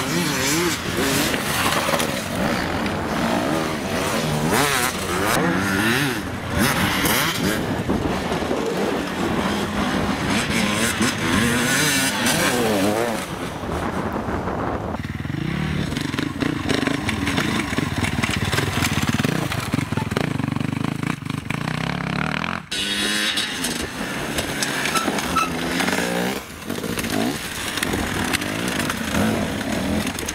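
Enduro dirt-bike engines revving and accelerating over rough trail, their pitch rising and falling with the throttle as one bike after another passes. The sound changes abruptly about halfway through and again a few seconds later.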